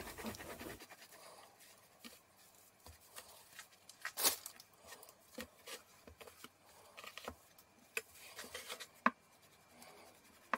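Soft scratching and light taps of a knife cutting through sesame seed burger buns and of the bun pieces being handled on a wooden chopping board, the loudest tap about four seconds in.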